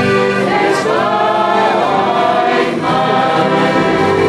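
Two diatonic button accordions of the Austrian Steirische Harmonika type play a folk tune together, with held chords and a steady bass.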